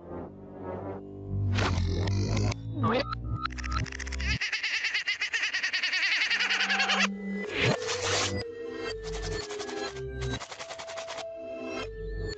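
Cartoon soundtrack music with comic sound effects. About four seconds in, a fast rattling roll runs for about three seconds, followed by a quick downward swoop in pitch.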